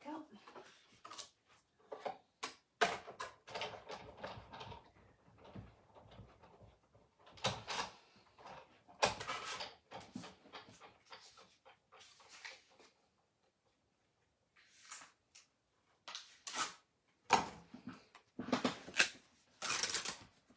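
Irregular clicks, knocks and rustles of card and metal die plates being handled off to one side, as a hand-cranked die-cutting machine is loaded and run to cut a paper label.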